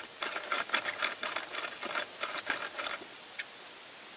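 Old hand-cranked geared hand drill boring into a wooden stake: a fast clicking rattle of the gears and the bit cutting wood, stopping about three seconds in as the hole is made. Its spindle is slightly bent, so the bit wobbles as it turns.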